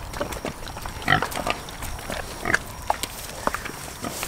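Large meat hogs grunting in short scattered bursts as they feed, with brief clicks and rustles of eating and movement in between.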